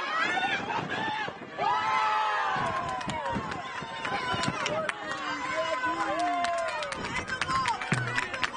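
Football players shouting and yelling in celebration just after a goal, high sliding shouts over open-field noise, with scattered sharp smacks in the second half.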